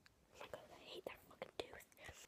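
Faint whispering, broken up by a few soft clicks.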